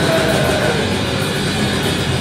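Rock band playing loudly live: amplified electric guitar over a drum kit, a dense, steady wall of sound.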